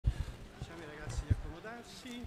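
Faint voices of people talking in a hall, with several short low thumps.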